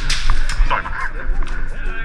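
Airsoft skirmish noise heard on a helmet camera: a rapid scatter of sharp cracks and clicks from airsoft guns firing and BBs hitting, over a heavy low rumble of the camera being knocked about.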